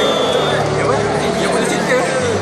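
Many voices talking at once, a hall full of chatter rather than singing, over a steady low hum.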